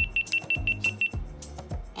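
GoPro Hero 9 beeping as it powers off after a long press of its power button: seven short high beeps at one pitch, about six a second, over the first second. Background music with a beat plays throughout.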